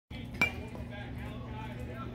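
A single sharp ping of an aluminum baseball bat striking a ball, with a brief metallic ring, about half a second in. A steady low hum runs underneath.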